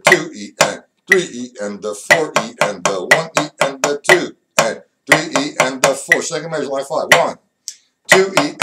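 Drumsticks playing a 4/4 snare reading exercise at 60 beats per minute, a mix of eighth and sixteenth notes. The strokes come several a second in an uneven pattern, with a short break about seven and a half seconds in.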